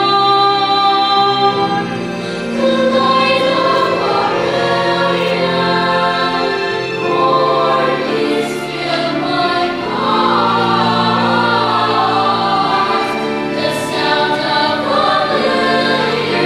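Children's choir singing a song in harmony, many voices holding long notes together. The sound dips briefly about two seconds in, then swells again.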